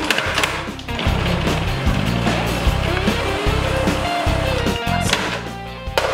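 Food processor running, its blade chopping rehydrated soya chunks into small pieces, then stopping just before the end, over background music.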